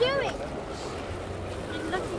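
Short calls that rise and fall in pitch, one at the very start and a couple more near the end, over a steady hiss of wind and water.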